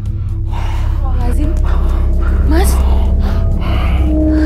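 A man sobbing with gasping breaths and voice catches that slide up in pitch, over background music with a steady low drone.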